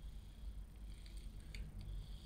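Quiet room tone with a low steady hum and a few faint light clicks and rustles from a hand handling a small wheeled robot.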